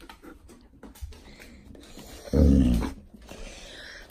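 Alaskan malamute giving one short, low vocal call close up, a little over two seconds in, lasting about half a second.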